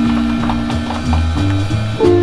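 Small jazz band playing: a held note over changing bass notes, with light, steady drum ticks about three or four times a second.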